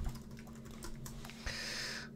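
Computer keyboard typing: a run of quick, light key clicks. A soft hiss joins in over the last half-second.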